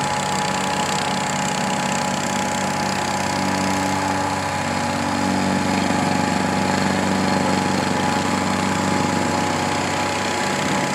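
Small asphalt paver's engine running steadily, with a steady high-pitched whine over it; the sound grows a little louder about halfway through.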